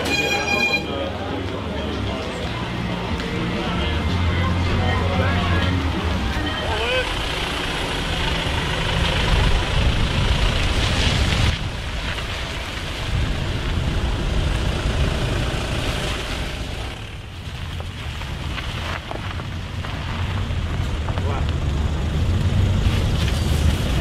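Roadside traffic: cars driving past with a steady low rumble and people talking in the background. A short pitched tone sounds right at the start.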